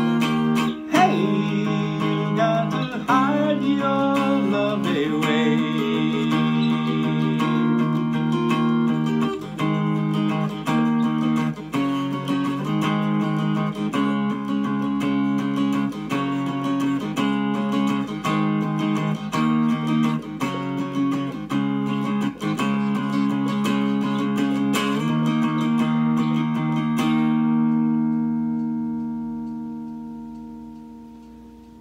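Three-string cigar box guitar played through a small Cube practice amp, strumming steady chords, with a held, sliding sung 'away' a few seconds in. A last chord is left to ring and fades out near the end.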